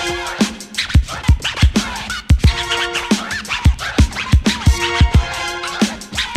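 Instrumental old-school hip hop dub mix: a steady drum beat with bass, repeating stacked synth stabs and turntable record scratching, with no rapping.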